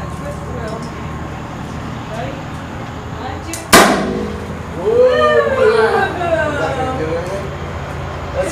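A twist-action gender reveal powder cannon fires with one sharp pop a little under four seconds in. About a second later high-pitched voices start shrieking and cheering, their pitch sweeping up and down.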